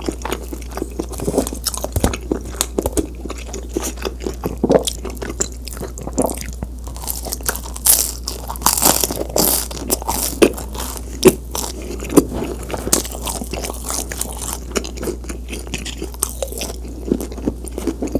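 Close-miked chewing and biting of a cheese pizza, a dense run of small mouth clicks. A louder crunchy stretch comes about halfway through.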